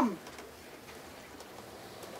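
A woman's voice finishing a spoken word with a drawn-out falling pitch, then faint open-air background for the rest of the time.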